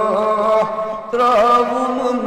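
Man singing a naat, a devotional Islamic song, in an ornamented, chant-like melody over a steady held drone. A short break comes about a second in before the next phrase.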